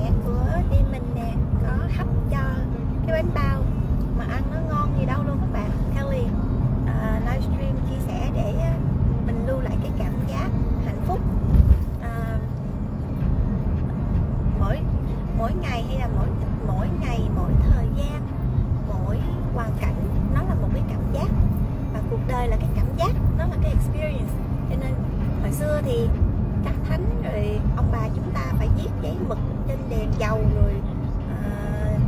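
Steady low rumble of a car's cabin while driving, with a woman talking over it.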